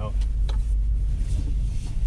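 Car driving slowly on a snow-covered road with snow chains on its tyres, heard from inside the cabin: a steady low rumble of engine and tyres, with a sharp click about half a second in.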